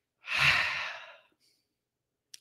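A man sighs: one long, breathy exhale lasting about a second that fades out.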